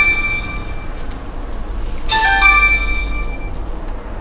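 An electronic two-note chime, a short lower note followed by a higher one that rings on, sounding twice: the first rings out at the start and the second comes about two seconds in. A low hum runs underneath.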